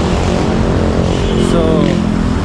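Road traffic noise, with a vehicle engine running steadily.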